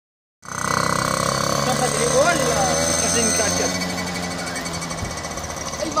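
Motorcycle engine running at a steady, rough pitch, with people's voices over it; the engine's low hum falls away near the end.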